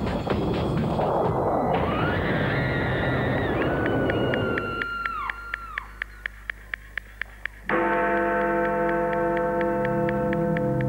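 Prerecorded show soundtrack: a long explosion-like rush of noise with several falling tones as the TNT plunger is pushed down. It thins to a clock ticking steadily, and about two-thirds of the way in a sustained bell chime enters suddenly over the ticking.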